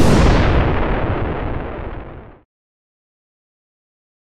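A single cinematic boom sound effect: a deep impact that hits at once and fades over about two and a half seconds, then cuts off suddenly.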